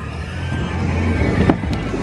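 Bowling alley din: a steady low rumble of rolling balls and lane machinery, with a sharp knock about one and a half seconds in, over background music.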